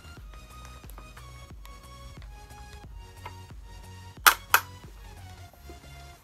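Background music with a steady pulse of notes. About four seconds in, two sharp plastic clicks a quarter of a second apart: a U clip snapping a visor onto a football helmet.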